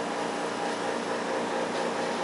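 Steady hum and hiss of running aquarium equipment: air pumps driving airstones that bubble in the tank.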